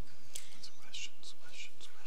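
Whispered speech near a microphone: a run of short, hissy, s-like sounds with no voiced tone behind them.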